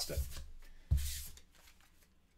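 Small game cards being handled off a deck: a papery rustle and slide, then a single light tap of cards set down on a wooden table a little under a second in, followed by faint handling.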